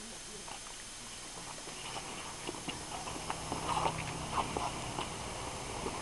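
Faint scuffling with scattered light knocks and taps, starting about two seconds in.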